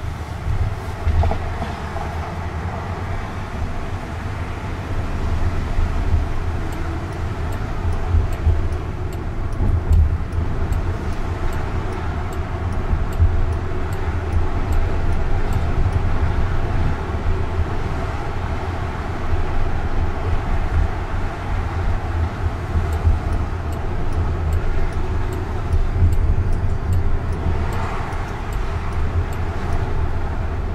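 Steady deep road and tyre rumble heard inside the cabin of a moving Jaguar I-Pace electric car.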